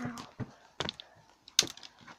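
A few sharp, irregular clicks and taps, the loudest about one and a half seconds in.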